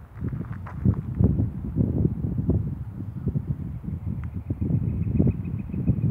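Wind buffeting the phone's microphone: an uneven low rumble that comes in gusts.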